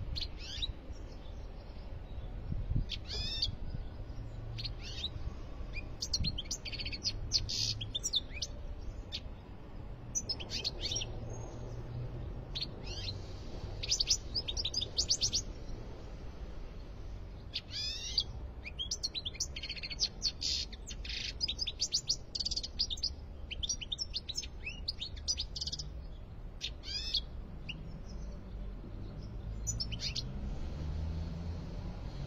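European goldfinch singing in a cage: bursts of rapid twittering and trilled song phrases with short pauses between them, over a low background rumble.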